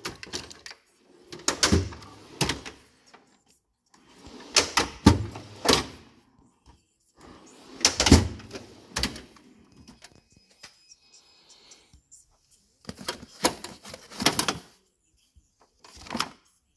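Steel drawers of a Mac Tools MB1084DT tool chest being slid open and pushed shut several times, each closing with a solid clunk.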